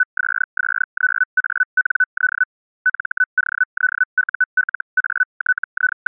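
Morse code sent as an audio tone: one steady-pitched beep keyed on and off in short elements, with brief gaps between groups.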